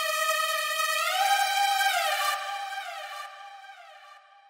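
A bright synth lead played alone in a high register, a counter-melody with no bass under it, gliding in pitch between its notes (D#5, G5, D5). The note fades away near the end.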